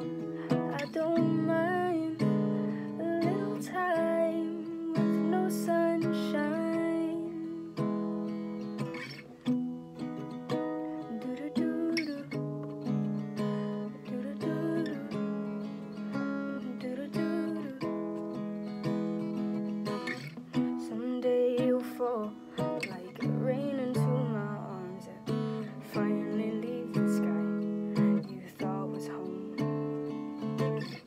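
Acoustic guitar strummed in a steady rhythm, chords ringing, through an instrumental passage of a song.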